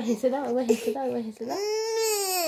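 A young girl crying: broken, tearful sounds in the first second or so, then a long wail that rises and falls in pitch near the end.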